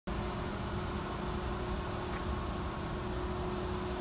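Steady machine hum with a low rumble, holding two fixed tones throughout, with one faint tick about halfway through.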